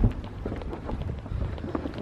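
Wind rumbling on a handheld camera's microphone, with scattered soft knocks of handling and footsteps while walking, and a sharper knock at the very start.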